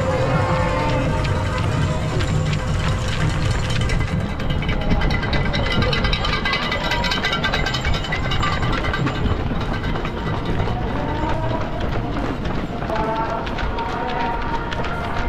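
Music and voices over the footsteps of a large crowd of runners moving off together from a mass race start.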